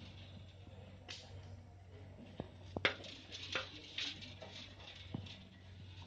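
Stinging catfish (singhi) stirring in shallow water in a metal pot: scattered small splashes and sharp knocks, the loudest about three seconds in, over a steady low hum.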